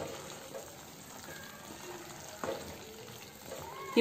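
Thick mutton liver pepper masala sizzling faintly in a pan while a wooden spatula stirs it, with a single knock about two and a half seconds in.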